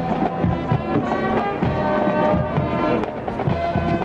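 Brass band music playing steadily, trombones and trumpets prominent, the kind a school marching band plays in the stands.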